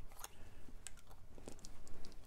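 A few faint small clicks and rubs of hands handling a resin fountain pen, taking off its cap.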